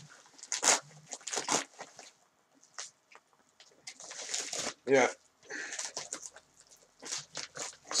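A mailed package being torn open and its packing rustled by hand: a series of short tearing and crinkling noises with brief pauses between them.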